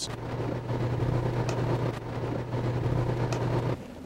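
Cabin noise inside a running police squad car: a steady low engine hum under an even wash of road noise, cutting off shortly before the end.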